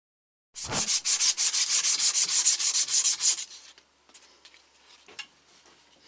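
Driveshaft slip yoke being rubbed clean and smooth by hand, in fast back-and-forth strokes about nine a second. The strokes start about half a second in and stop after about three seconds, followed by faint handling and a small click. The yoke is smoothed so it won't damage the transmission seal when it slides in.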